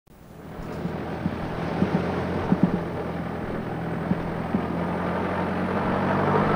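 Car driving along a rough gravel road: a steady engine hum under tyre and road noise, with a few short knocks. It fades in at the start.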